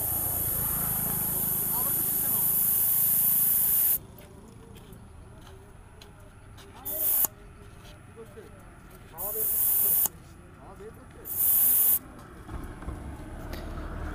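Air hissing out of a motorcycle's front tyre valve as it is pressed open: one long release of about four seconds, then three short bursts. Pressure is being let out to soften a front tyre that makes the bike bounce too much.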